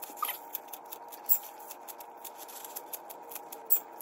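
Kitchen scissors snipping through fresh scallions: a run of short, crisp snips, with two louder cuts, one about a second in and one near the end.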